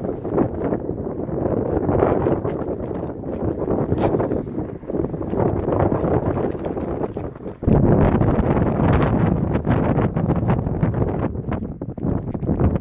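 Wind buffeting the microphone, growing louder about two-thirds of the way through, with scattered clicks and scuffs of footsteps on asphalt roof shingles.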